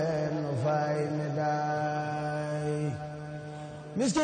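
Male Mouride religious chanting: one long note held at a steady pitch, which drops away about three seconds in.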